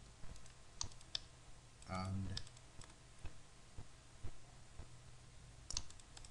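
Computer mouse buttons clicking: two sharp clicks about a second in and a few more just before the end, over a faint steady low hum.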